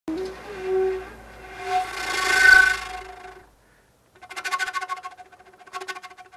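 Peruvian-style end-blown flute playing a slow phrase: a held note that swells into a loud, breathy tone, then a short pause, then a second phrase of quick repeated, fluttering notes.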